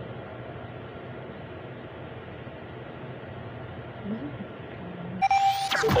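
FM radio reception with a steady hiss and muffled, dull-sounding broadcast audio. About five seconds in, the tuner lands on a strong station, and clear, full-range broadcast audio starts with a chime-like tone and rising sweeps of a station jingle.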